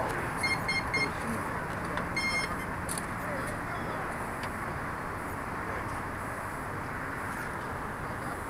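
Three short electronic beeps in quick succession, then a single longer beep at the same pitch about two seconds in, over a steady background hiss.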